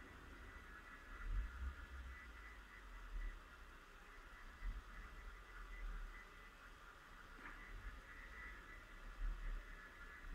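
Quiet room tone with a steady low hum and a few faint, soft handling noises from a steel crochet hook and cotton thread being worked by hand.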